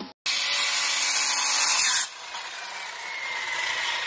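Circular saw with a Diablo Steel Demon blade cutting through steel tubing, a loud, harsh, hiss-like cut lasting about two seconds. Then the cut stops and the saw runs on more quietly, a faint whine slowly falling in pitch as the blade winds down.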